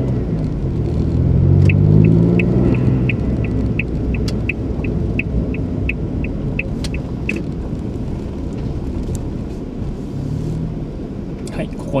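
Car cabin sound: the engine rising in pitch as the car pulls away, over steady road noise, then the turn indicator ticking about three times a second for several seconds while the car turns.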